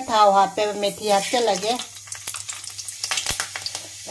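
Hot oil in a steel wok starting to sizzle and crackle, about halfway through, as an ingredient goes into it.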